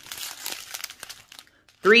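Small plastic zip bags of diamond painting drills crinkling as they are handled, an irregular crackle that dies away about a second and a half in.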